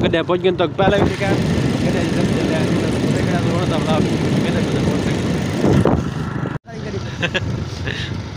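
Wind rushing over the microphone and the running of the open vehicle the men are riding on as it drives along a road, with men's voices talking over it. The sound breaks off for an instant about two-thirds of the way through, then the ride noise carries on.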